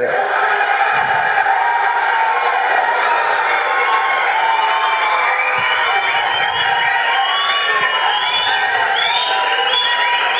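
A large audience in a hall cheering and shouting steadily, with many short high-pitched whistles rising and falling over the din.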